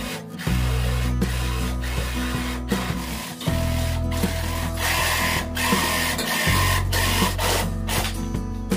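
Cordless jigsaw cutting through plywood, its blade chattering up and down through the sheet, heard under background music.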